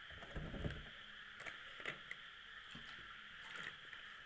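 Faint steady background hiss, with a few soft low thumps and light clicks in the first two seconds.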